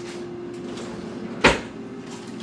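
A single sharp knock in a kitchen, one loud hard impact about one and a half seconds in that rings briefly, over a steady hum.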